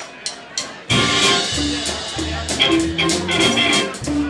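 A live band of electric guitar, upright bass, drum kit and pedal steel guitar starts a song. After a few quick clicks, the full band comes in together about a second in and settles into a steady beat.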